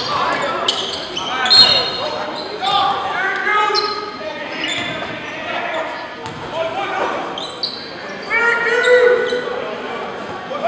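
A basketball bouncing on a hardwood gym floor, with several sharp bounces among indistinct players' and onlookers' voices, all echoing in a large gym.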